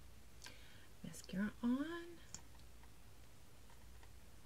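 A woman's quiet, murmured voice, one short utterance about a second in, with a couple of faint clicks around it.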